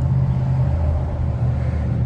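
Steady low mechanical hum of a running engine or motor, unchanging throughout.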